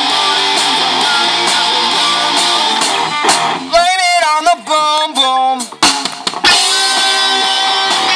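Live rock band playing: electric guitars, bass and drum kit. About halfway through, the band drops out for a short break of bending, wavering lead notes with a few sharp hits, then the full band comes back in.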